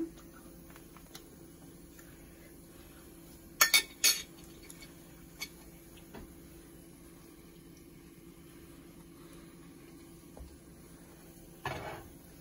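A fork clinking and scraping on a plate a few times, in a quick cluster of sharp clinks about four seconds in, with single lighter clicks later. Between them only quiet room tone with a faint steady hum.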